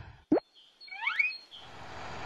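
Cartoon sound effects: a quick rising pop about a third of a second in, then a few short rising chirps around one second in. A low steady rumble comes in near the end.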